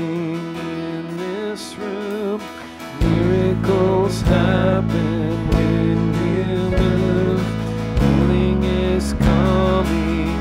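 A live worship band plays: a singing voice over guitar and keyboard, with bass and drums coming in strongly about three seconds in.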